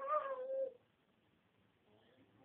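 A toddler's single high-pitched, drawn-out vocal call, under a second long and sliding slightly down in pitch, in answer to being asked to say bye-bye.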